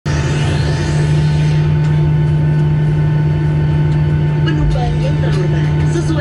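Steady low drone and hum inside the cabin of a Boeing 737-800 airliner, with a hiss over it for the first second or so. The safety video's soundtrack comes in over the drone near the end.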